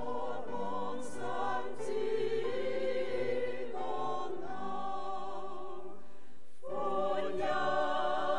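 Church choir singing a Christmas carol in long held notes, with a brief break for breath a little before the end before the singing resumes.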